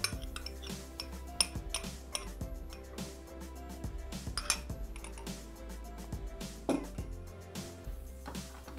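Light clinks and knocks of a small glass cup against the stainless-steel Thermomix bowl as egg yolks are tipped in, over soft background music. The sharpest clinks fall at the start, about a second and a half in, and halfway through.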